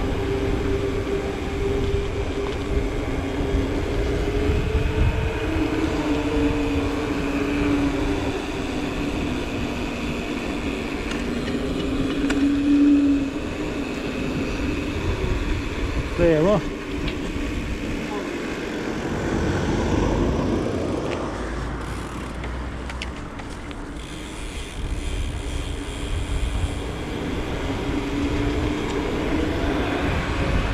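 Wind buffeting the microphone of a helmet- or chest-mounted action camera on a moving mountain bike, with the hum of knobby tyres rolling on asphalt, wavering in pitch with speed. A brief squeak about sixteen seconds in.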